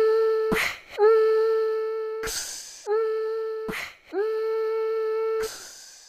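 Background music intro: a single humming note held four times at the same pitch, each held for about a second, with a short hissing swell after each one.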